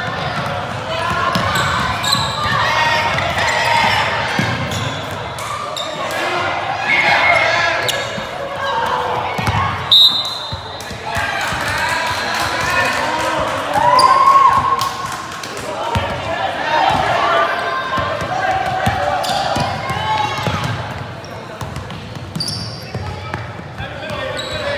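Basketball being dribbled and bounced on a hardwood court amid indistinct voices of players and spectators, echoing in a large gym. A short high-pitched tone sounds about ten seconds in.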